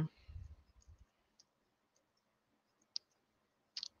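Faint handling of a small plastic action figure: a soft low rub in the first second, then a sharp click about three seconds in and two more just before the end.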